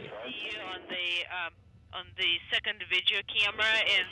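Speech on the air-to-ground radio loop between the Soyuz crew and mission control, with a short pause about halfway through.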